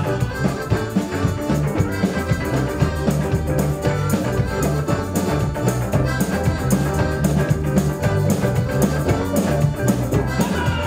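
Live rock band playing an instrumental break between sung verses: electric and acoustic-electric guitars, bass line and drum kit with a steady beat, a tambourine shaken on top, and accordion.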